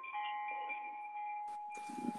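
Faint steady electronic tones on a telephone conference line, a few held pitches over line hiss, with a click about one and a half seconds in.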